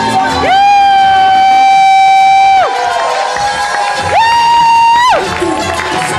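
Two long, loud, high held yells: one of about two seconds, then a shorter, slightly higher one about four seconds in. Party music and crowd cheering run underneath.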